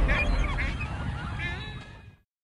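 Several short bird calls that sweep in pitch, over a low rumble that fades out near the end.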